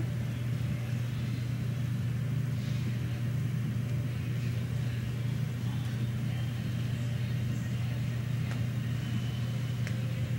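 A steady low hum with a light hiss over it, even throughout, broken only by a few faint ticks.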